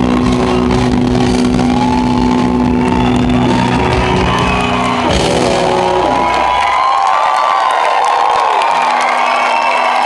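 Live rock band with electric guitar holding sustained chords that stop about six and a half seconds in, as the song ends. Audience shouting and whooping over the music, carrying on as cheering once the band stops.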